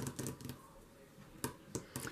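Hands handling a paper journal page on a tabletop: faint rustles and light taps, with a couple of sharper ticks in the second half.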